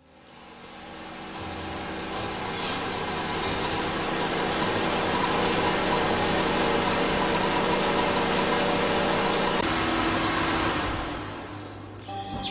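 A steady droning hum made of sustained tones over a noisy hiss. It fades in over the first few seconds, holds steady, and fades out near the end.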